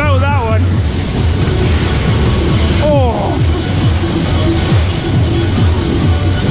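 Loud fairground music with a singing voice, over a steady low rumble from the dodgem ride. The singing comes in near the start and again about three seconds in.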